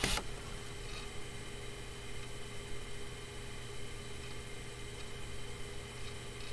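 Steady low electrical hum and hiss of room tone, with a brief noise at the very start.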